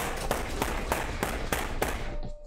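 Rapid, regular hard hits, about three a second, over a loud dense rushing noise that starts abruptly just before and dies away at the end.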